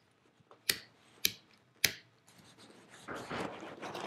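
Three sharp clicks about half a second apart, then a rustling, scraping noise near the end.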